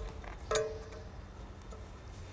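A steel spanner clinks against a galvanised nut and the steel template plate while the top nuts of L-bolts are being undone. There is one sharp metallic clink with a short ring about half a second in.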